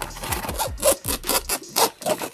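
Doll packaging being pulled open by hand: a printed box and its pink plastic tray rubbing and scraping in a run of short scratchy strokes.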